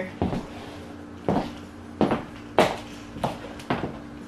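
Stiletto high heels striking a wood floor while walking: about six sharp heel clicks at an uneven pace, roughly one every half second to second.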